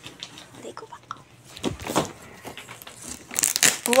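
Gift wrapping paper being handled and crinkling, then ripped open with a loud tear near the end.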